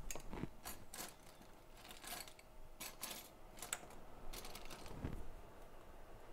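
Irregular light clicks and taps from a smartphone and a small prying tool being handled on a workbench mat.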